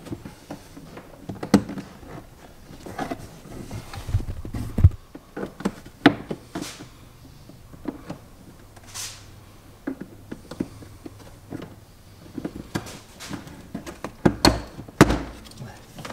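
Irregular clicks, knocks and thumps of hands working plastic interior trim and covers at the base of a car's door pillar, with a cluster of heavier thumps near the end.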